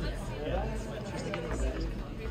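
Audience chatter in a small club, indistinct voices talking over one another, with a low steady hum underneath and a few light clicks.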